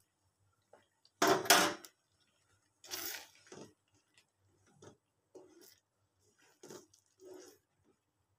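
Kitchen utensils and dishes clattering: a loud clatter about a second in, then another about three seconds in and a few lighter knocks and scrapes.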